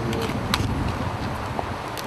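Wind buffeting the microphone, a steady low rumble, with a single sharp click about half a second in.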